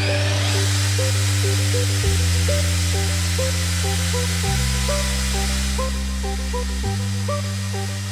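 Background electronic music with a bass line and a repeating melody, over a steady high whir from a Black+Decker HD 555 impact drill's motor running as its bit drills through a plate.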